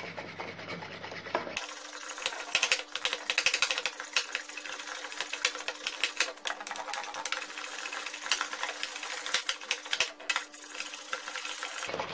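Hand whisk beating a thin egg, sugar, milk and melted-butter batter in a ceramic bowl: quick, busy clicking and scraping of the wire against the bowl.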